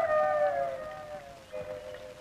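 Background film music: one long held note that slides slowly downward and fades away.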